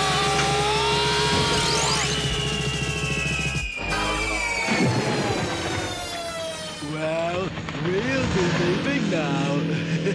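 Cartoon soundtrack music with racing-vehicle engine sound effects: a low drone under a long, slowly falling whistle-like tone that ends about five seconds in, then wavering, warbling tones for the rest.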